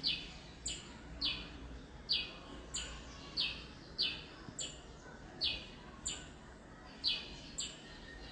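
A bird calling: a short chirp that slides down in pitch, repeated steadily about every two-thirds of a second.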